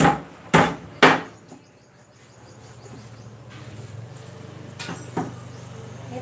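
Kitchen knife chopping on a wooden cutting board: three sharp chops about half a second apart at the start, then two softer chops near the end.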